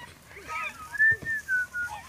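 A person whistling a few notes. The longest is a held note about halfway through that falls slightly in pitch at the end.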